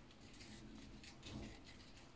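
Near silence with faint scratching and rustling of a hamster moving in the sand of its sand bath, a little louder about halfway through.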